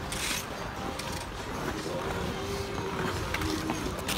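Ice skate blades scraping and hissing on rink ice, with a sharp scrape right at the start, over a steady background of skaters' voices.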